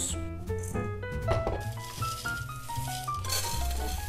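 Background music with a stepping melody and steady bass, while dry rolled oats pour from a plastic jug into a large bowl, a rattling hiss that builds toward the end.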